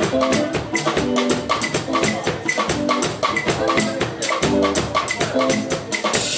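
Live highlife band playing an instrumental passage: drums keep a steady beat under a short melodic figure, guitar-like, repeating about once a second.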